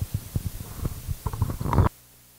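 Handling noise from a handheld microphone: irregular low thumps and rumbles as it is moved in the hand. Near the end it cuts off suddenly, leaving a faint steady hum, as the mic goes dead.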